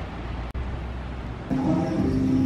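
A low ambient rumble, then background music with sustained chords that comes in about one and a half seconds in.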